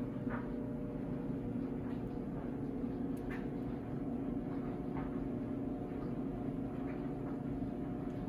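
A steady low hum runs underneath, with a few faint small clicks from a metal nib being worked into a feather quill pen's holder.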